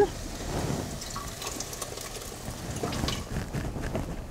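Caramelized onions being dumped from a pan into a stockpot of boiling water: a faint, steady splashing with a few light clicks of the pan about three seconds in.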